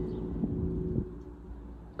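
Low, steady engine hum of a motor vehicle, with a low rumble underneath, fading about a second in.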